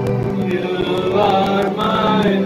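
Men singing a hymn together over steady musical accompaniment.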